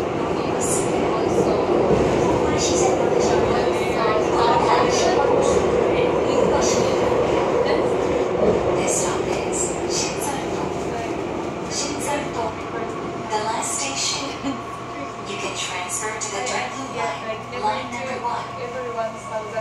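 Seoul subway Line 2 electric train running through a tunnel: a steady rumble of wheels on rail with scattered short clicks and hisses. The rumble eases off over the last several seconds as the train slows into a station.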